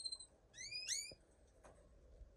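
Canary calling: a short, high chirp, then two quick upward-sweeping chirps about half a second and one second in.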